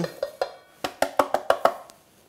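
A clear plastic container rapped repeatedly against the rim of a stainless steel mixing bowl to knock grated onion loose: about eight quick, sharp taps, each with a short ring, growing fainter towards the end.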